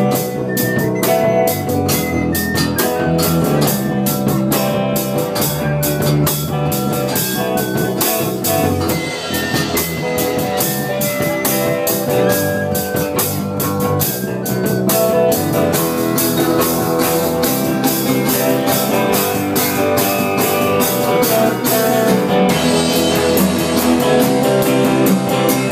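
A live rock band playing an instrumental passage: guitar and drum kit with a steady beat.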